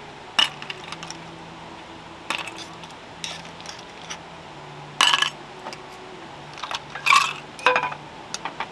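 Metal cookware and utensils clinking and clattering: about six short, sharp clinks with a brief ring, the loudest about five seconds and seven seconds in.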